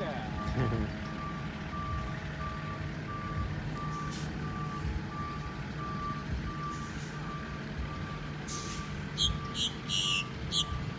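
A vehicle's reversing alarm beeping steadily, about two beeps a second, over a low engine drone. Several short, sharp high chirps come in near the end.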